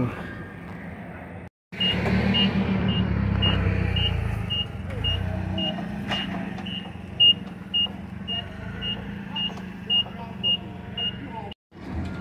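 Forklift engine running with its warning beeper sounding steadily about twice a second as it lifts pallets off a trailer.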